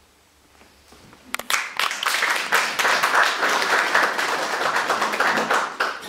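Audience applauding, starting about a second and a half in after a brief hush and fading just before the end.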